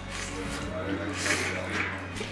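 A man biting into and chewing grilled lamb tail, with a breathy hiss about a second in, over a low steady hum and faint background voices.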